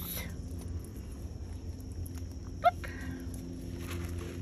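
A chicken gives one short, quick-rising call about two-thirds of the way through, over a low steady background hum.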